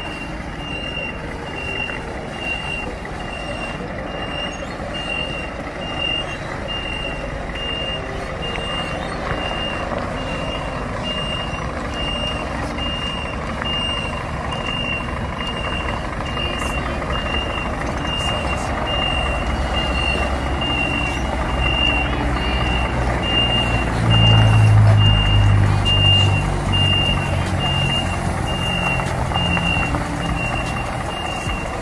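Reversing alarm beeping steadily, a high tone about once a second, while a Scania R 540 tractor's V8 diesel engine runs underneath. The engine grows louder for a couple of seconds about 24 seconds in as the tanker combination moves.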